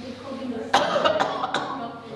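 A man coughing into his hand, a few short coughs starting under a second in, mixed with some speech.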